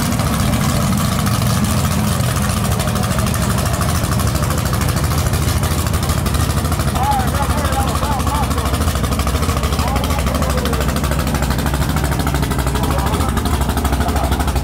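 Fox-body Ford Mustang GT drag car's engine idling with a steady, pulsing low note as it reverses slowly.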